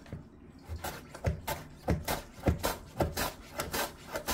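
Korean radish being julienned on a plastic mandoline slicer: a run of about six rasping strokes, roughly one every half second, as the radish is pushed across the blades.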